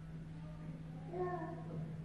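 A short pitched cry lasting about half a second, a little past a second in, over a steady low hum.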